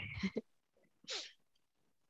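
Faint breathy sounds from a woman: the tail of a soft laugh, then one short breathy puff about a second in.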